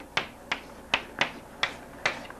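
Chalk striking and scraping on a chalkboard as letters are written, a handful of sharp taps about a third to half a second apart.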